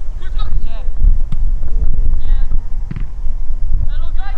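Wind buffeting the camera microphone, a steady low rumble, with brief far-off shouts from players on the pitch.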